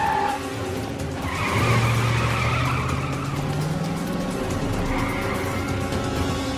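A car pulling away hard: the tyres squeal for about three seconds while the engine revs up, rising in pitch, and a shorter squeal follows near the end.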